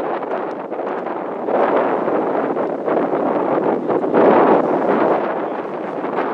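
Wind buffeting the camcorder's microphone: a loud, rushing noise that swells in gusts about a second and a half in and again around four seconds.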